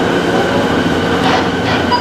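Steady hum of a stationary electric train at an underground platform, with a few constant whining tones held over it.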